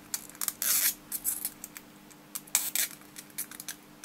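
Thin metallised polyester film from a film capacitor's winding crackling and rustling as it is unrolled and handled between fingers, in a few short bursts with small clicks between them. A faint steady hum runs underneath.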